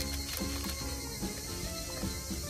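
Plastic food packaging crinkling and clicking as a tray of frozen gyoza is taken out of its bag, over background music.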